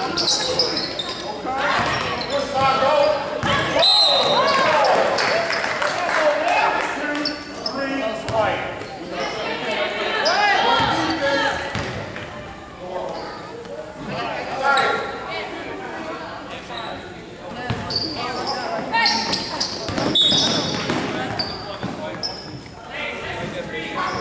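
Voices and shouts of players and spectators echoing in a large gymnasium, with a basketball bouncing now and then on the hardwood court.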